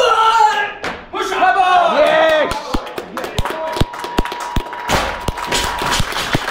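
Loud shouting and a yell as a barbell snatch is completed, then a run of sharp thuds and claps as the loaded barbell is dropped on the gym floor and onlookers clap.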